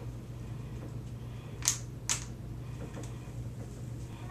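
Two short, sharp clicks about half a second apart near the middle, from a flat iron and a heat-resistant plastic straightening comb being worked down a section of hair, over a faint steady low hum.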